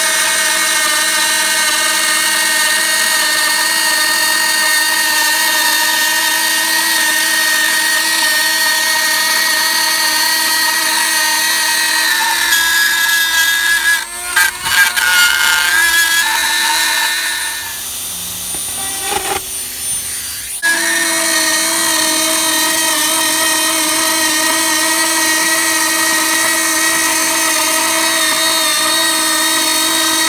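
Hand-held rotary tool with a cutting-guide base running at high speed, its thin bit cutting through plywood: a steady high whine. About halfway through the whine wavers with a few knocks, then drops away for about three seconds and comes back suddenly at full pitch.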